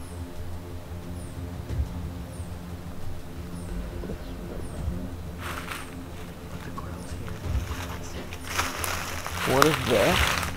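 A low, steady background music drone, with a faint high chirp repeating about once a second. Rustling in dry brush comes briefly about five seconds in and louder near the end, along with a short murmured voice.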